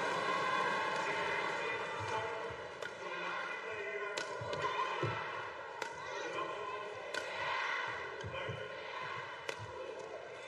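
Badminton rally: about five sharp racket strikes on the shuttlecock, one every second or two, with low thuds of the players' feet on the court between them and steady arena crowd noise underneath.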